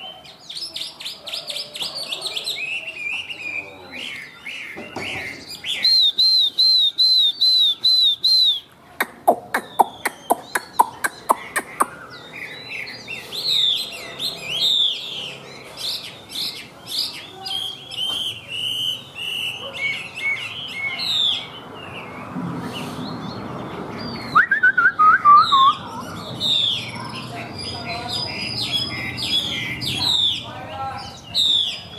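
Chinese hwamei (Garrulax canorus) singing a long, varied song. It gives runs of repeated whistled notes, a fast series of sharp, loud notes about a third of the way in, and rich rolling phrases, with a quick falling run of notes past the middle.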